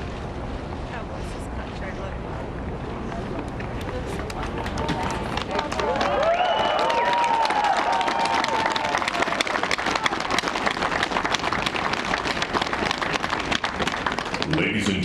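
Outdoor audience applauding, the clapping swelling and growing louder about five seconds in, with a few voices calling out over it.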